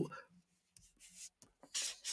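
A pause in a man's speech: quiet room tone, then a short, soft breath near the end as he is about to speak again.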